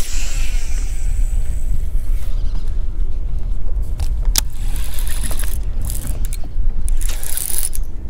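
A fishing cast from a boat: a brief hiss of line running off the reel that fades over the first two seconds, then a few light clicks and rattles of the reel and rod, over a steady low rumble on the microphone.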